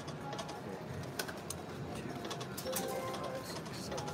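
Video slot machine sounds during a spin: faint electronic tones and a few light clicks as the reels run and stop, over steady casino background noise.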